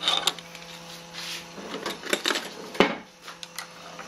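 Scattered small metallic clicks and taps of hands working at a homemade metal lathe, with one sharp click a little before three seconds in. A faint steady hum runs under the first half.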